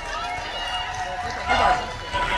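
A group of children talking and calling out over one another, their high voices overlapping, with a louder burst of voices about one and a half seconds in.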